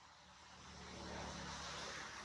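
Engine noise growing steadily louder: a low hum under a broad rushing sound, as of a motor approaching.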